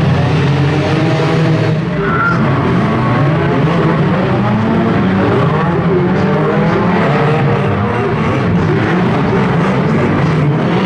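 Several banger racing cars' engines revving hard at the same time, their overlapping pitches rising and falling as they push against each other in the mud.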